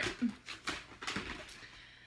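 Light rustling and a few soft knocks of items being handled in a cardboard shipping box, with a brief low vocal sound near the start.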